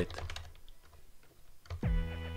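Computer keyboard typing: a few light keystrokes in the first half second. A quick downward sweep follows near the end.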